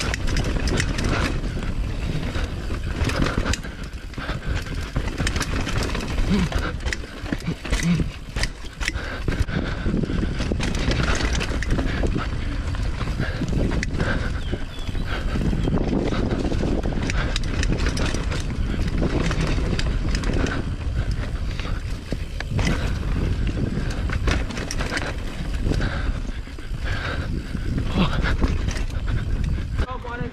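Mountain bike rolling fast down a dirt singletrack: a steady rumble of knobby tyres on packed dirt and roots, with frequent clicks and knocks of the bike rattling over bumps.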